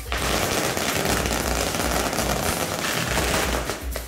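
A string of firecrackers going off in a dense, unbroken crackle of rapid bangs. It starts abruptly and dies away just before the end.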